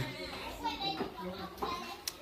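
Small children's voices, babbling and calling out here and there.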